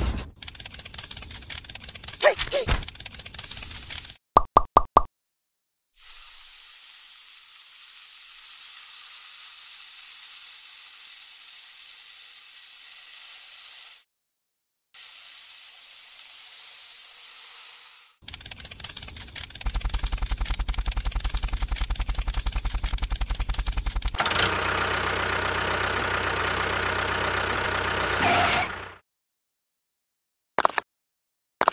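A small trowel blade scraping lines into sand: a steady hiss, broken once for about a second partway. Before it come four short beeps; after it, a run of rapid clicks and then a steady mechanical hum that cuts off near the end.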